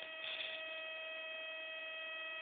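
Self-oscillating Bedini SSG (Daftman) pulse circuit screaming as it oscillates: a steady high-pitched whine from its coil, one tone with several overtones above it.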